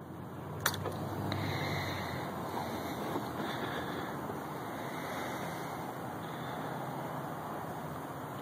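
A sharp click as the motorcycle's ignition key is turned on, then a steady low hum with faint high tones while the radar detector runs its power-up sequence.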